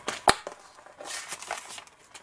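Torn-out magazine pages being handled and shuffled, paper rustling lightly, with a sharp tap about a third of a second in.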